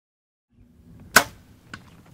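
A bow being shot at a mouflon ram: one sharp, loud crack of the bow's release about a second in, then a much fainter knock about half a second later.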